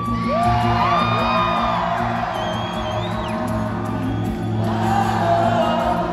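Acoustic guitar played live through a concert sound system, with sustained low notes ringing under it. Fans' voices rise over it, with high gliding whoops in the first second and a half and again around the middle.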